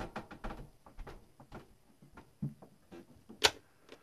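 Faint clicks and taps of small hand tools being handled at a workbench, with one sharp click about three and a half seconds in.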